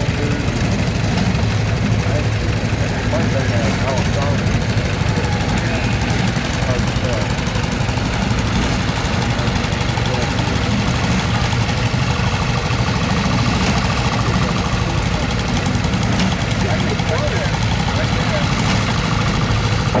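Small garden tractor engine running steadily at low throttle, a constant low hum, as the tractor creeps up onto a teeter-totter balance board.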